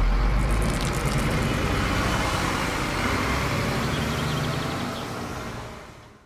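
A bus engine running steadily with road rumble, fading away near the end.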